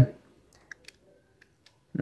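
Soft clicks of keys on a Casio fx-991EX ClassWiz scientific calculator being pressed: a few faint clicks about half a second in and a few more past the middle.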